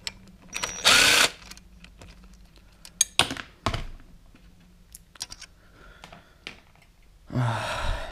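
Pneumatic wrench spinning out the clutch spring bolts on a KTM SX 125 two-stroke, in several short bursts. The longest and loudest burst comes about a second in, two brief ones follow around three and a half seconds, and there is a hissing run near the end.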